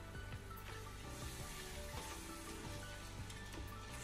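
Soft background music over a faint sizzle of crushed tomato and spices frying in a pot.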